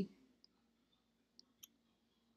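Computer mouse clicking faintly a few times: one click about half a second in, then two close together about a second and a half in.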